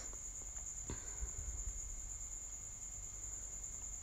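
A steady high-pitched trill or whine over faint room noise, with a faint click about a second in.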